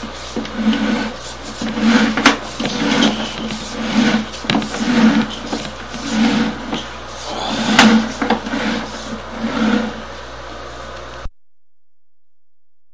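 Sewer inspection camera's push cable being pulled back out of the drain line: a low pulse repeating about once a second, with sharp clicks in between. The sound cuts off abruptly near the end.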